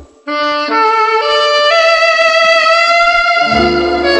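Saxophone playing the slow melody of a jazz and rhythm-and-blues instrumental: after a brief gap about a quarter second in, it climbs through a few notes to a long held note, unaccompanied, and the band's low rhythm section comes back in near the end.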